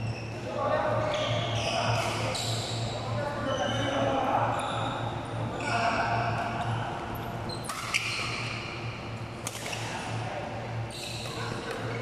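Badminton rally in a large echoing hall: sharp racket strikes on the shuttlecock, two of them close together about two thirds of the way through, the first the loudest, with short high squeaks of shoes on the court floor. Voices talk underneath, over a steady low hum.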